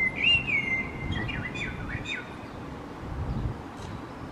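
A songbird singing one short phrase in the first two seconds: a clear whistled note that rises and falls, followed by a few quick down-slurred notes, over a low steady background rumble.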